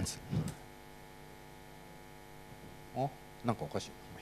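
Steady electrical mains hum with a ladder of overtones, coming through the microphone and PA system. A few short, faint voice sounds break in near the start and again about three seconds in.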